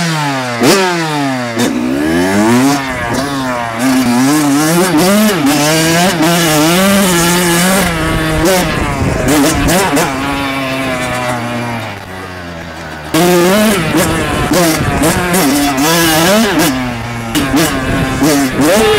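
Kawasaki KX100 two-stroke dirt bike engine revved sharply several times, then pulling away with the revs rising and falling as it rides. About twelve seconds in it drops briefly to a lower, quieter note off the throttle before picking up again.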